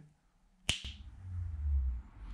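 A single crisp finger snap about two-thirds of a second in, followed by a faint low rumble.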